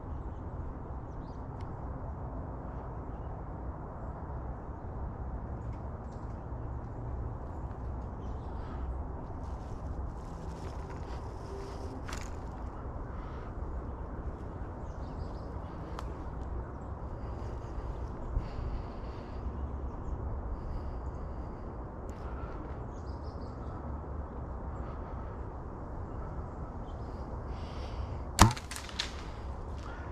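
Steady low background rumble with a few faint crackles, then near the end a single sharp snap as a compound bow is shot.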